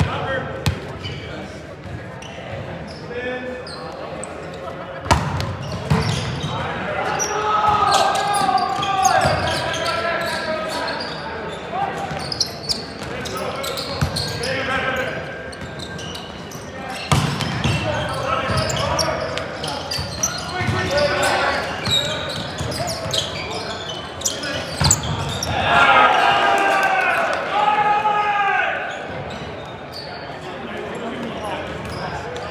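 A volleyball rally in a large gym. Sharp slaps of hands hitting the ball ring out in the hall, the hardest at about 5, 17 and 25 seconds. Between the hits players shout calls to each other.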